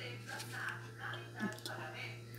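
Faint voices and music in the background, over a steady low hum.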